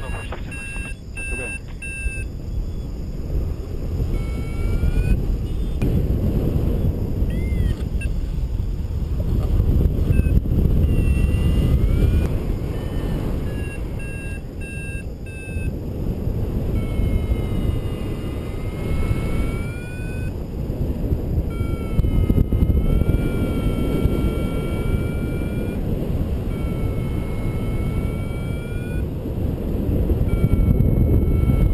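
Wind rushing over the microphone of a paraglider in flight. Above it, an electronic flight variometer beeps in short runs and at times gives longer tones that slide up and down in pitch.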